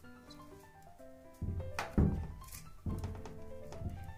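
Background music, with two knocks from a metal PVC card die cutter being handled, one about two seconds in and another about a second later.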